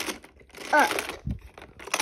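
Plastic clattering and rustling as a toy car is pushed by hand along a plastic Hot Wheels track tower, with a dull bump a little after halfway through.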